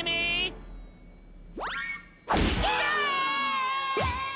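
Cartoon sound effects: a quick rising whoosh, then a loud whack followed by a long held, wavering tone. A second short hit near the end matches a cartoon magic poof.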